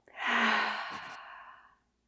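A woman's deep exhale through the mouth, a long sigh with a brief touch of voice near its start, fading out over about a second and a half.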